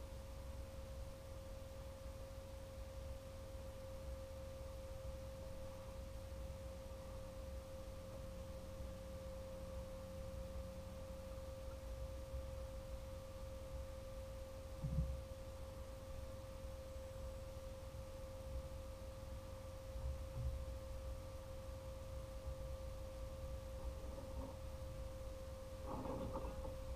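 A steady, unwavering hum at one pitch, over a low rumble, with a single knock about fifteen seconds in.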